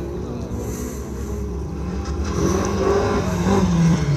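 Rallycross race car engine approaching and getting louder through the second half, its note rising and falling as the driver works the throttle.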